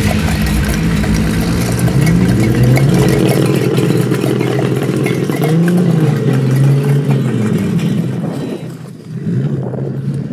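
Nissan Skyline's engine running and revving, its pitch climbing and falling several times as the car accelerates, fading away near the end.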